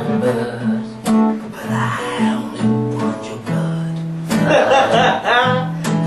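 Acoustic guitar being strummed, with low notes ringing under the strokes. A voice sings briefly for about a second, some four seconds in.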